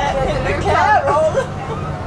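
A voice talking inside a moving city bus during the first second and a half, over the bus's steady low running hum.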